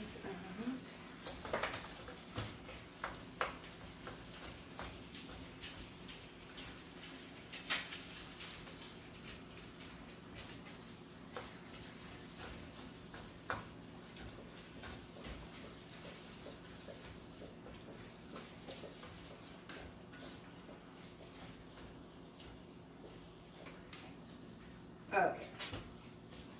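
Ground beef and onions sizzling softly in a cast-iron skillet as a wooden spatula stirs and scrapes them, with occasional sharp knocks of the spatula against the pan. A steady low hum runs underneath.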